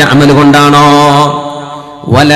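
A man's voice holding one long chanted note at a steady pitch, in the melodic recitation style of a sermon, fading away near the end.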